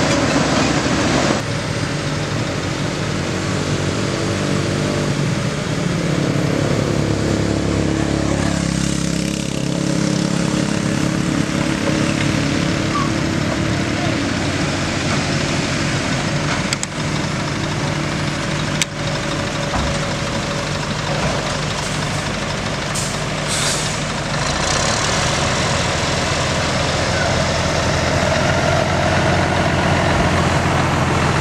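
Heavy diesel machinery running steadily, its engine note shifting a few times, with a few sharp clicks in the middle.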